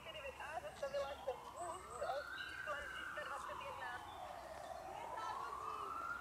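An emergency vehicle's siren wailing, its pitch slowly rising and falling and then climbing again near the end. Spectators' voices are heard over the first couple of seconds.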